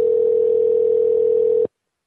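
A steady telephone line tone heard over the phone call, one held pitch lasting about two seconds, which stops abruptly near the end.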